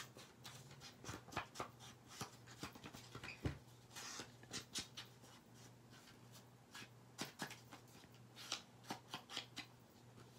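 Foam ink blending tool rubbed and dabbed around the edges of a paper tag: a faint string of soft, irregular scratchy brushing strokes.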